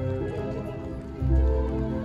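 Music with held notes that move in steps over a deep bass note, which comes in a little after the first second.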